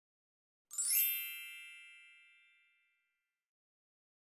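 A single bright, bell-like chime about three-quarters of a second in, ringing and fading away over about two seconds: the channel's logo sting at the start of the video.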